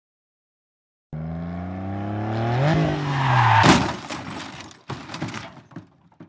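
A car engine starting suddenly about a second in and rising in pitch as it revs, ending in a loud crash a little over three and a half seconds in, followed by scattered clattering and a second, smaller impact about a second later.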